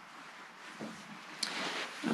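Faint rustling of pieced cotton quilt strips being picked up and handled, with a short light tick about one and a half seconds in.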